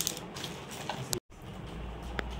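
Small plastic jewellery packets rustling and crinkling as they are handled, with a few light clicks. The sound drops out completely for a moment just after a second in.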